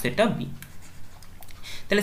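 A few short scratchy pen strokes on a writing surface as a short symbol is written by hand, after two spoken words.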